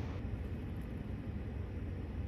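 Faint, steady low rumble of outdoor background noise, with no distinct sounds standing out.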